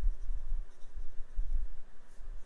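Ballpoint pen writing on a paper diary page, with irregular low bumps.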